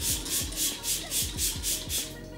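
Makeup setting spray misted onto the face from a pump bottle in rapid repeated pumps, about four short hisses a second.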